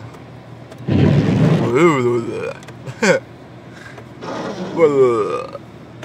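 A man's wordless vocal sounds, drawn out and gliding up and down in pitch, twice with a short one between, over the steady low hum of a car idling with its heater fan blowing.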